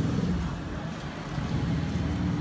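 A motor vehicle engine idling with a steady low hum.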